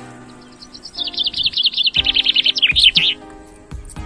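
A small bird sings a fast trill of chirps, the notes falling in pitch and growing louder, then stopping about three seconds in. Background music plays underneath, with a few light knocks.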